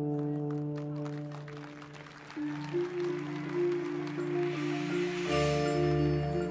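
Marching band show music: held sustained chords under quick, repeated keyboard mallet percussion notes from the front ensemble. A noisy swell builds through the second half, and a new, louder chord comes in about five seconds in.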